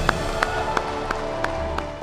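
Applause, mixed under background music with held tones and a steady beat of about three ticks a second.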